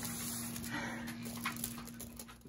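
Faint rustling of bed sheets as a baby shifts and crawls on them, with soft breathing, over a steady low hum in the room.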